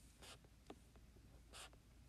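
Faint scratching and tapping of a stylus writing on a tablet screen, a few short strokes.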